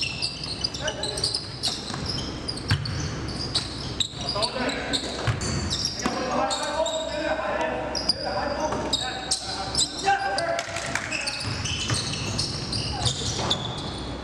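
Basketball game sounds in a gymnasium: a ball bouncing on the hardwood floor in repeated sharp knocks, with players' voices calling out, all echoing in the large hall.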